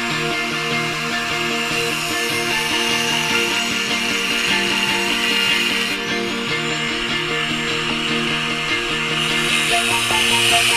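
Angle grinder with a cut-off disc cutting into the steel shell of a hermetic compressor, a steady grinding hiss, heard under background music with chords that change every half second or so.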